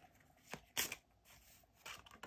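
A few faint, brief rustles of tarot cards being handled.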